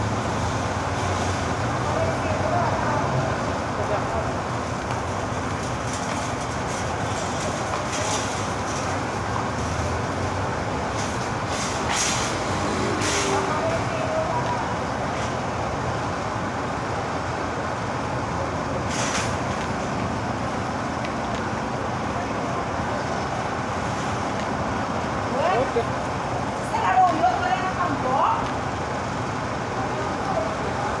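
Steady city street traffic noise, with faint voices coming and going and a few sharp clicks.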